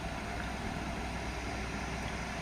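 Steady low hum with faint hiss, unchanging throughout: background machine noise.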